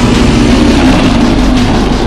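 A dragon's deep, loud rumbling growl, a film sound effect, held steadily.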